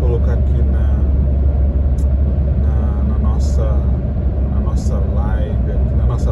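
Steady low road and engine rumble of a car driving on a highway, heard from inside the cabin.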